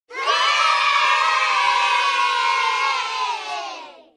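A group of children cheering and shouting together in one long sustained cheer, fading away near the end.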